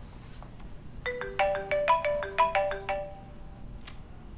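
Mobile phone ringtone: a short melody of quick, clear notes that starts again about a second in and stops after about three seconds.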